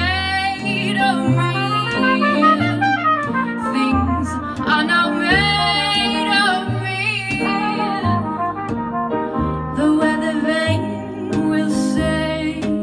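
Live jazz band in an instrumental break: a trumpet plays a melodic solo line over the band, with a bass line moving underneath.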